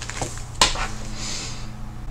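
A pen writing on planner paper: soft scratching strokes, with a short sharp tap about half a second in.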